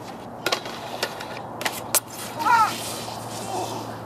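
Snowboard knocking and scraping on a metal stair handrail and the steps: a run of sharp knocks in the first two seconds, then a short cry about halfway through.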